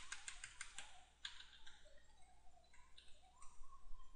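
Computer keyboard keystrokes while editing code: a quick run of faint clicks in the first second, then a few scattered quieter taps.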